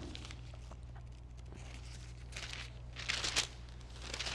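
Thin Bible pages rustling as they are leafed through, the loudest rustle a little after three seconds in, over a steady low hum.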